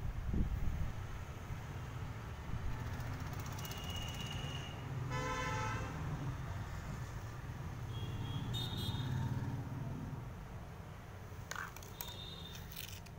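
Steady low rumble of background traffic, with a short vehicle horn toot about five seconds in and a few faint high beeps.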